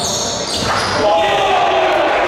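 Sound of a basketball game in a large, echoing gym: voices of players and benches calling out, with the ball bouncing on the hardwood court.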